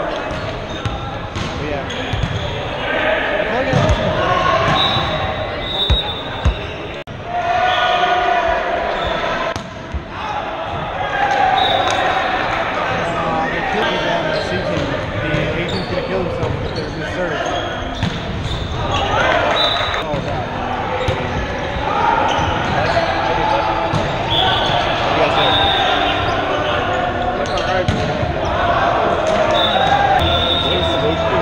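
Indoor volleyball play in a large, echoing gymnasium: players shouting and calling to each other, sneakers squeaking on the hardwood floor, and the ball being hit, with a few sharp hits about four and six seconds in.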